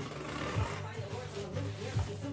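Background pop music from a radio, with a deep bass line, a thump every second or so, and a voice over it.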